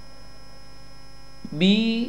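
Steady electrical mains hum with a faint high whine in the recording's background, then a voice says a single syllable, "B", about one and a half seconds in.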